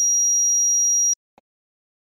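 A loud, steady, high-pitched electronic tone that cuts off abruptly just over a second in, followed by a faint blip.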